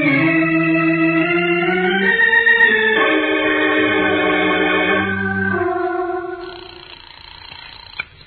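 Organ music bridge between scenes of an old-time radio drama: sustained organ chords that shift a few times, then fade out a second or so before the end.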